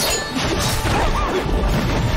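Dubbed fight-scene sound effects: a crashing impact at the start as a glowing magic sword strikes, laid over dramatic background music.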